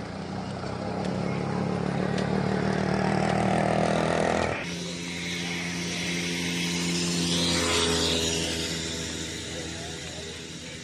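Motor vehicle engines running close by on the road, a steady drone that swells in the first half, changes abruptly about halfway through and then fades toward the end.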